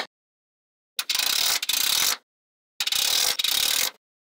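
Small magnetic balls clicking against each other in two fast ratchet-like runs of clicks, each a little over a second long, with a gap of silence between.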